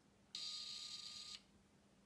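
A roughly 40,000-volt electric arc firing once for about a second, a steady high-pitched hiss with a thin tone beneath it, cutting off sharply. The arc is pulsed on and off by a microcontroller to give the electrodes time to cool.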